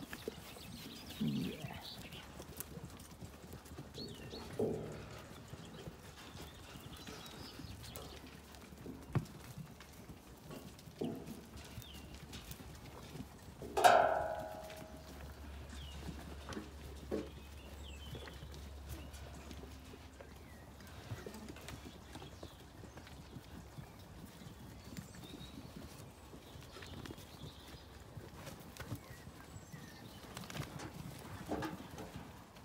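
Zwartbles sheep and lambs milling about, with scattered short sounds and one loud sheep bleat about halfway through.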